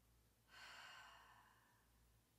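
A woman's soft, breathy sigh, one audible exhale that starts about half a second in and fades away over about a second.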